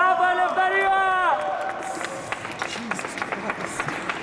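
A woman's held last sung note of a pop song, falling away and ending a little over a second in, followed by scattered clapping and crowd noise in a large hall.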